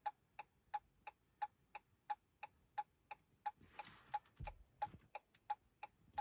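Chrysler 200's hazard flasher ticking steadily inside the cabin, about three clicks a second. A faint rustle comes about four seconds in.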